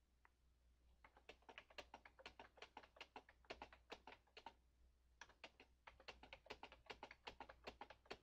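Faint computer keyboard typing: a quick, steady run of keystrokes with a brief pause about halfway through, as a long row of single digits separated by spaces is typed.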